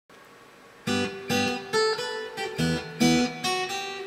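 Takamine acoustic guitar played fingerstyle in open DGDGBE tuning: after a moment of faint hiss, plucked bass notes and chords begin about a second in, with a fresh attack roughly every half second.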